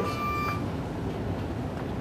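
A short steady electronic beep that stops about half a second in, then a steady low hum in a pause between words.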